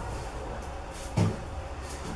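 Strap clamp being hand-tightened to pull a stainless steel sink bowl up against the underside of a countertop: faint handling sounds with one short dull knock a little past halfway.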